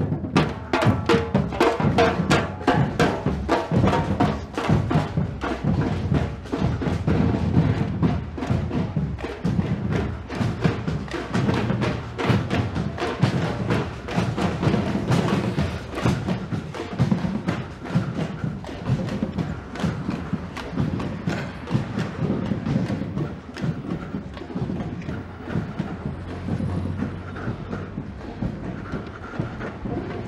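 A street drum band of many drummers playing a fast, rhythmic beat, loud at first and growing steadily fainter as the drums fall behind.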